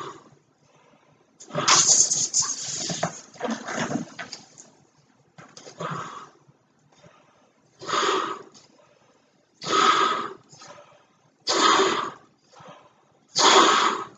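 Large latex weather balloon being blown up by mouth: forceful breaths puffed into its neck about every two seconds, the first one longer than the rest, with faint short in-breaths between them.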